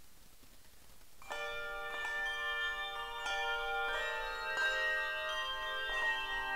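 Handbell choir ringing: after a brief hush, a chord of many handbells is struck together about a second in, with fresh strikes added every second or so and the bells sustaining into a fuller ringing.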